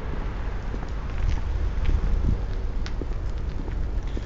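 Outdoor street ambience: a steady low rumble of wind on the microphone and traffic, with a few faint ticks from the handheld camera being moved.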